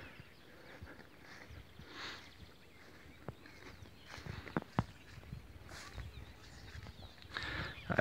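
Quiet open-air ambience with faint distant bird calls and a few soft clicks.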